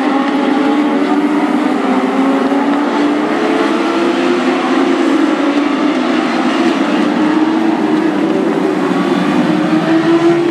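A pack of Legends race cars at speed, several engines running at high revs together, their pitches sliding slowly up and down as the cars go around the track.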